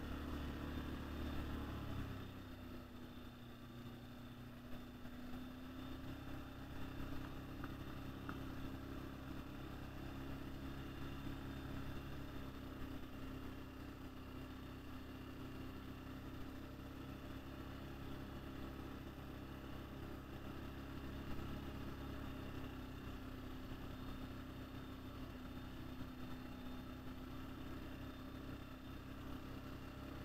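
ATV engine running at low trail speed. Its note drops about two seconds in, then holds steady.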